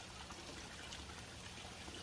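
Faint, steady trickle and splash of water falling from the return pipes into a backyard fish tank.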